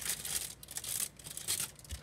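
Clear plastic packaging crinkling in irregular bursts as it is handled.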